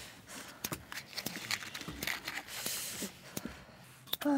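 Scattered clicks, knocks and rustling from firewood and kindling being handled in a fireplace as a campfire is being lit.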